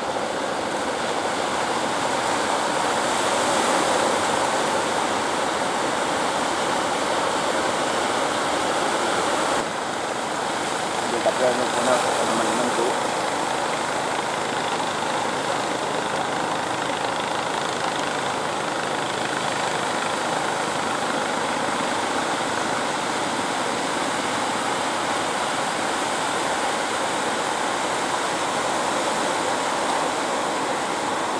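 Steady rush of breaking surf and sea. A brief distant voice is heard around eleven to twelve seconds in.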